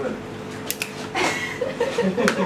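People talking and chuckling in low voices, with two short sharp clicks a little under a second in.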